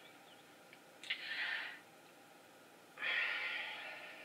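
A woman breathing audibly twice through her nose: a short breath about a second in and a longer one near the end.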